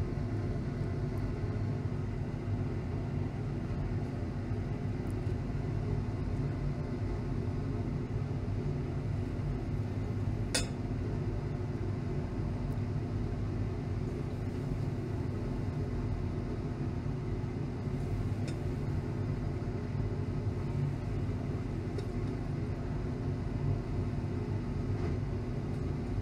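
Steady low machine hum with several held low tones, unchanging throughout, and a single faint glassy clink about ten seconds in.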